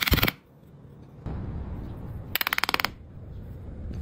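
Metal spoons lifted out of a sand mould with an iron hook: two short bursts of very rapid metallic rattling, one right at the start and one about two and a half seconds in, with a gritty scraping of sand between them.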